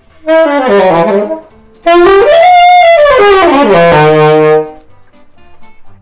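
Saxophone played loudly: a short run of notes stepping downward, then after a brief gap a longer phrase that climbs and comes back down, ending on a low held note.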